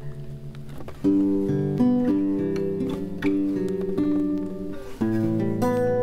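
Acoustic guitar being played solo: a few quiet notes, then fuller chords ring out from about a second in, with a fresh chord struck near the end.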